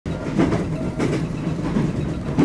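Passenger train running, heard from inside the carriage: a steady low rumble with the wheels knocking over rail joints in a slow, regular rhythm.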